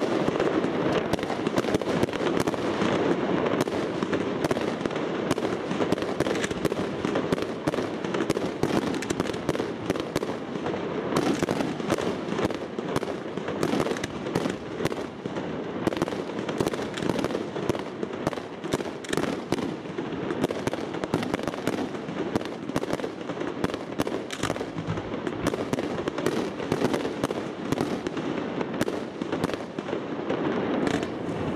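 Fireworks crackling: a dense, continuous stream of small sharp pops and crackles from glittering, twinkling effects, with an occasional louder report.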